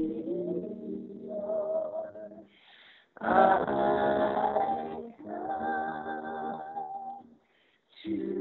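Three voices, a man and two women, singing together in close family harmony. Phrases of held notes stop briefly a little before the halfway point and again near the end, heard through a video call.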